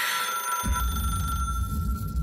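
An old-style telephone ringing, with a low rumble that comes in about half a second in.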